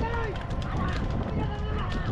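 Short shouted calls, rising and falling in pitch, from men driving a pair of bulls that pull a wooden racing cart, once at the start and again about a second and a half in. They ride over a steady low rumble.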